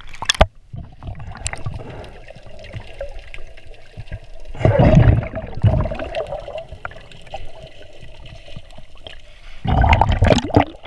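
Water sloshing and gurgling around a handheld camera at and just below the sea surface while snorkeling, with scattered small clicks. There is a louder rush of water about halfway through and another near the end.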